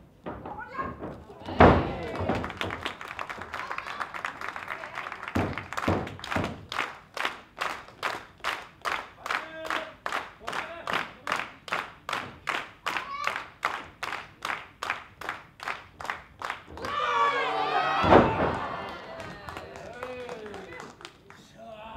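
Heavy thud of a wrestler's body hitting the ring canvas, then the audience clapping in unison at about two claps a second. Near the end a wrestler shouts and another loud thud lands on the mat.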